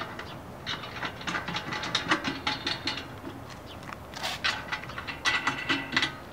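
Ratchet wrench clicking in quick runs, tightening the nuts that hold a security enclosure down onto its mounting studs. Two runs of clicks, with a short pause just past the middle.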